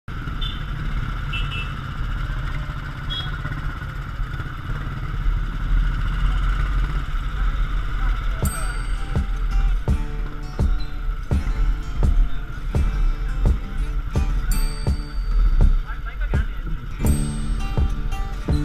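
Motorcycle engine running steadily under road and wind noise, with three short high beeps in the first few seconds. About halfway through, music with a steady beat starts and carries on over the engine noise.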